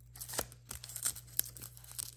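A nasal swab's paper wrapper being peeled and torn open by hand: a run of irregular small tearing crackles and crinkles.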